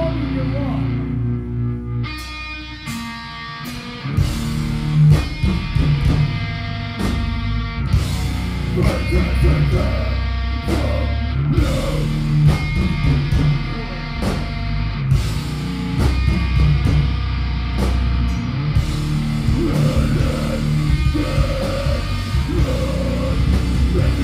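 Heavy metal band playing live, recorded from the crowd: distorted electric guitars, bass and drums, with a vocalist shouting into the microphone. Near the start the low end drops away for about two seconds, leaving the guitar, before the full band crashes back in.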